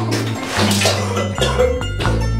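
A person vomiting into a toilet bowl, a loud splashing gush lasting about a second and a half, over background music with a steady bass line.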